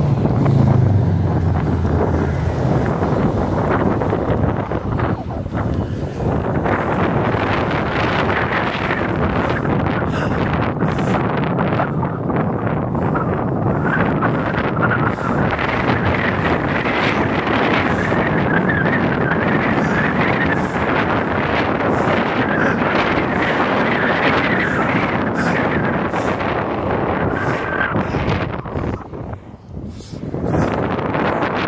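Wind buffeting a phone's microphone while riding at speed: a steady, loud rush of noise that dips briefly just before the end.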